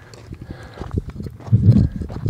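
Footsteps on gravelly desert ground, a quick run of low knocks with rubbing and bumping from the handheld camera, and a louder low burst near the end.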